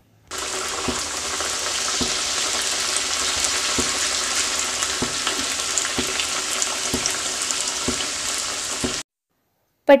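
Puff-pastry egg puffs deep-frying in hot oil, a steady sizzle and bubbling. It cuts off suddenly about nine seconds in.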